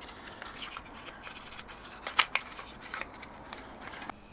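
Small cardboard bulb box handled and opened, its flaps rustling as a P21/5W bulb is pulled out, with two sharp clicks close together a little past halfway.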